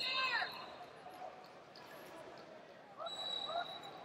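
Voices shouting in a large arena hall: a loud call at the very start and another shorter shout about three seconds in, over a low background of the hall.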